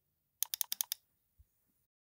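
A quick run of about six computer keyboard key clicks, followed by a faint low thump.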